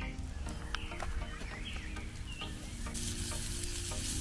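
Raw burger patties sizzling on a wire grill over a fire pit, the sizzle growing louder about three seconds in, with small crackles. Birds chirp a few times in the background.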